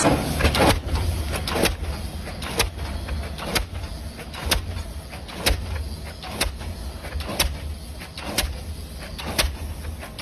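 Diesel pile hammer driving a pile: a sharp metallic blow about once a second, each with a puff of exhaust, over a steady low rumble.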